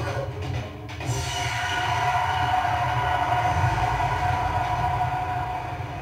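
Film trailer soundtrack: a long sustained droning tone over a low rumble, holding steady from about a second in, after a short dip.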